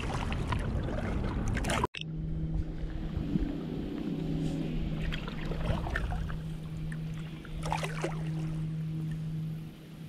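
Kayak paddling on a river: water splashing and dripping off the paddle, with wind on the microphone. After an abrupt cut about two seconds in, a steady low hum joins the water sounds and fades just before the end.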